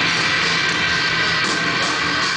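Rock band playing live and loud: fast, guitar-driven rock with electric guitars over drums, heard from the crowd.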